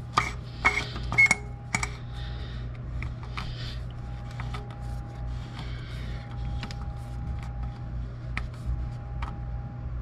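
Oil filter housing cap being hand-threaded into the housing: a few light clicks and short squeaks in the first two seconds, then faint scattered ticks as it is turned tight, over a steady low hum.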